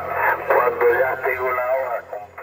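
A voice coming through an amateur radio transceiver's speaker: narrow, band-limited single-sideband speech, with a steady low hum underneath.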